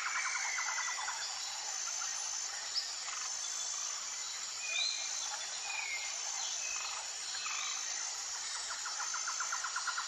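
Natural outdoor ambience of birds and insects. A high thin whistled note repeats about every second and a half, a fast pulsing trill sounds at the start and again near the end, and a few short chirps fall in the middle.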